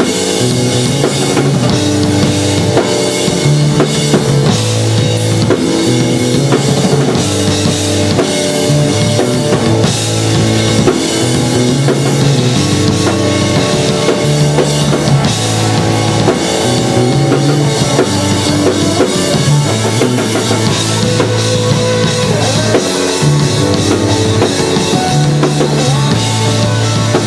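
Live rock band playing: drum kit, bass guitar and electric guitar, with a bass line that moves between held notes every couple of seconds under steady drum hits.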